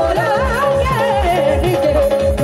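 Live Punjabi devotional song through a PA: a woman sings ornamented, wavering vocal runs that fall in pitch. Beneath her are a steady keyboard drone and a quick, regular hand-drum beat.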